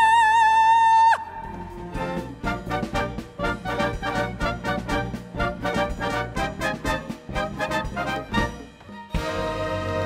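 A soprano holds a high note with wide vibrato that stops about a second in. Then an orchestra plays a fast, rhythmic passage of short, detached chords. Near the end it gives way to sustained, brass-led music.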